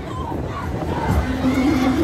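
Riders on a spinning fairground thrill ride shouting, with one long drawn-out shout from just past a second in, over a low rumble.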